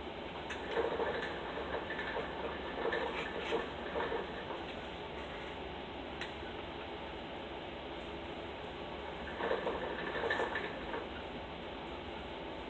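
Quiet room tone: a steady low hiss with faint rustles and soft clicks, in two short spells, one about a second in and another near ten seconds.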